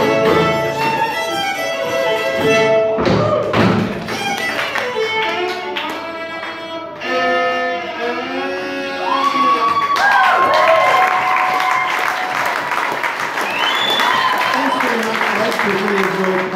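Bluegrass string band of fiddle, banjo, acoustic guitar and double bass playing the end of a tune, with the fiddle out front. From about ten seconds in, the audience applauds over the last held notes.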